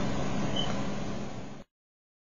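Steady background room noise with a low hum, picked up by a webcam microphone, fading slightly and then cutting off to silence about a second and a half in.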